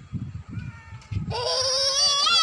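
A toddler's loud, high-pitched drawn-out call that starts a little past halfway and wavers in pitch, with a few soft low thumps before it.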